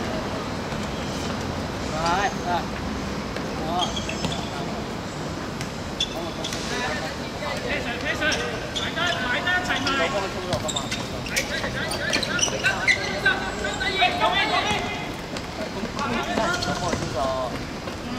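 Footballers' voices calling and shouting during play on a small hard-court pitch, mostly in the second half of the stretch, over a steady outdoor background, with an occasional sharp knock of the ball being kicked.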